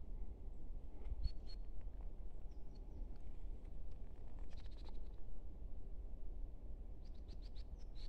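Crows cawing a few times in the distance, in short scattered calls, over a faint steady low rumble.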